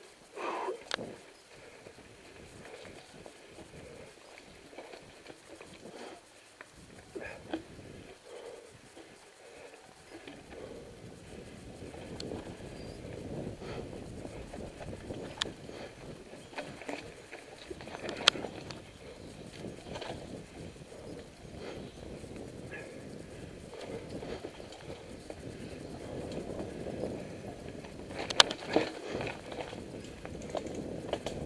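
Mountain bike rolling along a dirt singletrack: tyre and trail noise with the bike rattling and clacking over bumps. It grows steadier and louder about ten seconds in, with a couple of sharp knocks later on.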